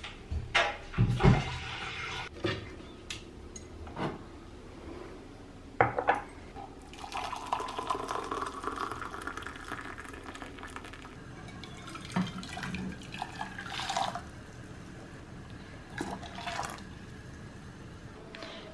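A cupboard door and ceramic mugs knock and clink in the first few seconds. Then water is poured from a kettle into a mug, and from the mug into an aluminium saucepan, as two pours, the second rising in pitch as it fills.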